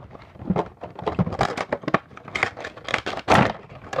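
A Funko Pop figure's cardboard box and plastic insert being worked open by hand: a quick string of irregular rustles, scrapes and knocks, loudest a little over three seconds in.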